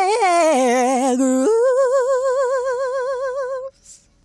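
A woman's voice singing alone without words: a short run of bending notes, then a jump up to a high note held with vibrato that stops a little before the end.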